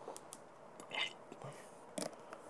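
Faint wet mouth clicks and lip smacks from a mouth holding a pinch of snuff, with a short hiss about a second in.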